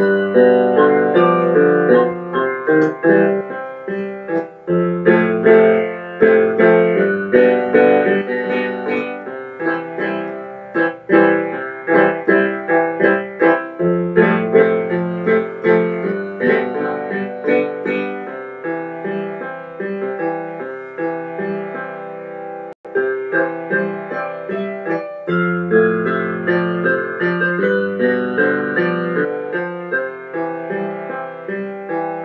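Keyboard played two-handed with a piano sound: continuous chords over a bass line, with one momentary break in the sound about three-quarters of the way through.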